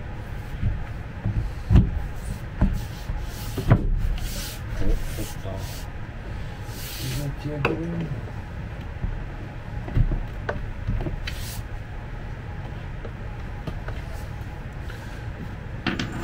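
Laminated chipboard top panel being fitted onto its dowels and pressed down onto the cabinet sides: several sharp wooden knocks in the first four seconds and another about ten seconds in, with board scraping against board in between.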